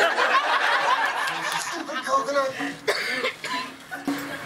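Cinema audience laughing and chuckling, many voices together, with talking mixed in; the laughter is thickest in the first couple of seconds.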